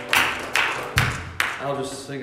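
Several sharp hits, claps or knocks, about half a second apart, with a man's voice between them.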